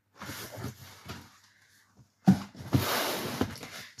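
Handling noise from a cardboard box: rustling and scraping, a pause of about a second, then a sharp knock just past halfway followed by more rustling and scraping.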